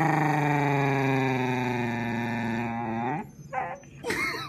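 A dog lets out one long, drawn-out vocal groan of about three and a half seconds, low and slowly sinking in pitch, then gives a short second call near the end.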